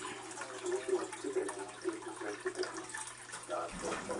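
Steady running-water noise of an aquarium filter, with a low hum under it and indistinct voices talking in the background.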